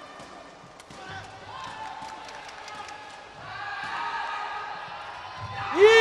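Sepak takraw rally: a few sharp kicks of the takraw ball ring in the hall amid players' shouts. Near the end comes a loud, rising-and-falling shout as the rally ends and the point is won.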